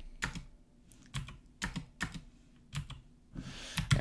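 Computer keyboard keystrokes: a handful of sharp key clicks in small groups with short pauses between, as code is cut and the cursor moved in a text editor.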